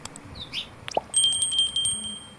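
Subscribe-button sound effect: a short click, then a small bell ringing with a fast trill for about a second.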